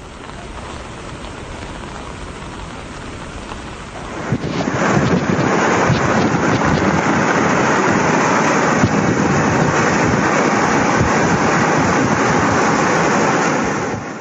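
Heavy rain and rushing floodwater picked up by a phone microphone as a steady roar of noise, which jumps noticeably louder about four and a half seconds in.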